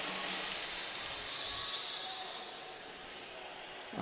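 Faint, even background noise of a large sports hall with a crowd and skaters, easing off a little toward the end.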